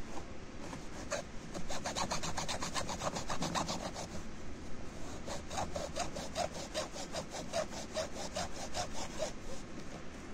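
Small junior hacksaw cutting through the plastic housing of a water-purifier filter cartridge, in quick, even back-and-forth strokes at about four a second.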